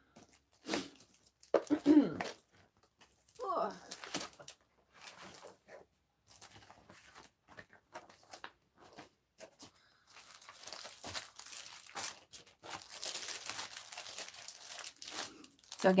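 Clear plastic page protectors and a plastic-wrapped pack of 4-pocket pages crinkling and rustling as they are handled, sparse at first and denser and louder in the last several seconds.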